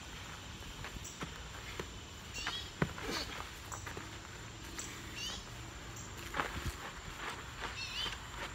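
Boxing gloves smacking and shoes scuffing on dirt during sparring: a few sharp hits, the loudest about three seconds in. Behind them, an animal's short falling call repeats about every two and a half seconds.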